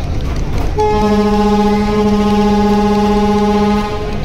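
Ship's horn of a river passenger launch sounding one long, steady blast of about three seconds, starting about a second in, over a continuous low rumble.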